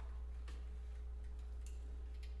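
Quiet concert hall in a pause between pieces of a wind band: a steady low hum with a few faint, scattered clicks and taps.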